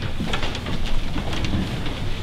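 A congregation sitting back down in pews: rustling and shuffling with many irregular knocks and thumps.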